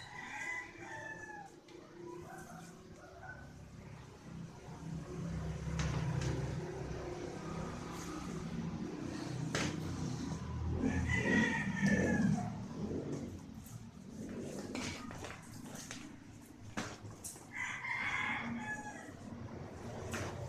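Squeaky rubber chicken toy squealing as a puppy bites and chews it: three squawk-like squeals, one at the start, a longer one about midway and one near the end, with small clicks and knocks of the toy on tile in between.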